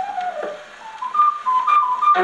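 A 1931 dance band 78 rpm record playing on a wind-up gramophone. In a quieter break between full brass passages, a lone high instrument plays a short line: a note gliding down, then a few quick notes climbing higher.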